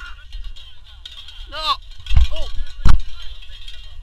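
A person crying out "no!" in a high voice, then "oh!", with a dull thud between the cries and a single sharp knock just before three seconds in, the loudest sound.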